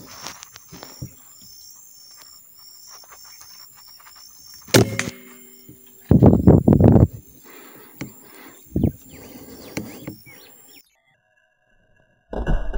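A single rifle shot about five seconds in, a sharp crack with a brief ringing after it. About a second later comes the loudest sound, roughly a second of loud, ragged rustling and thudding, with a shorter burst later on.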